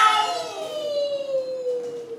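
A small dog howling: one long call that slowly falls in pitch.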